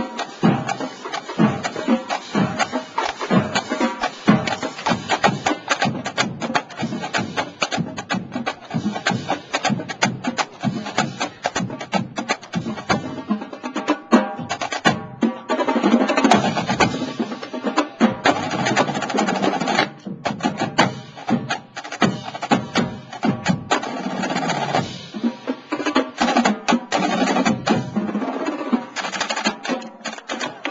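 Marching snare drum line playing a street cadence: fast, tightly unison snare strokes, with denser stretches of rapid strokes part way through.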